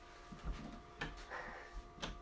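A tall wooden pantry cabinet door being unlatched and pulled open, with faint handling sounds and a couple of short clicks.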